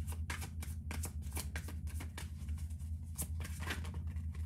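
A tarot deck being shuffled by hand, the cards slapping and sliding in quick irregular strokes, several a second, over a steady low hum.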